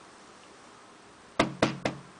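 Three sharp knocks in quick succession, about a quarter second apart, in the second half, each with a short hollow ring.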